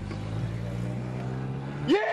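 Car engine running steadily, heard from inside the car. Near the end a brief, loud voice calls out, rising and then falling in pitch.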